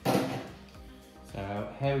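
A single sudden knock right at the start, with a short ringing tail, over steady background music.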